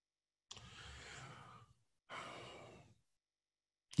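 A man sighing: two faint, drawn-out breaths about a second long each, the first about half a second in and the second just after two seconds in.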